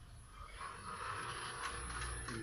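PPA Jetflex piston gate opener running and swinging a steel gate leaf closed. Its motor whir comes in steadily about half a second in.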